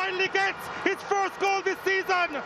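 A high-pitched voice calling out in quick short syllables, several a second, each held on one pitch and dropping at its end, over the steady noise of a crowd in the stands.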